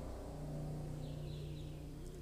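Steady low background hum, with a faint short high chirp about a second in.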